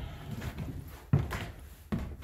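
Footsteps on old wooden stairs: two heavy thuds, one about a second in and one near the end.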